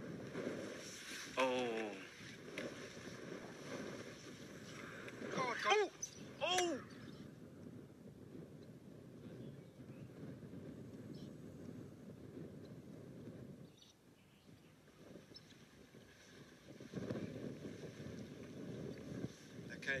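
A steady low rumble of wind and vehicle, broken by startled human cries: one falling cry about a second and a half in, then a cluster of high, rising-and-falling screams around six seconds in, as a crocodile lunges at a drinking cheetah.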